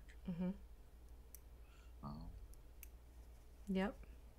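A few faint, sharp clicks spaced a second or more apart over a low steady hum, between short murmured replies.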